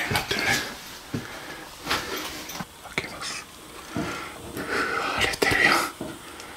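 A person breathing heavily close to the microphone, in short breathy bursts, with a few light clicks and knocks from handling the camera.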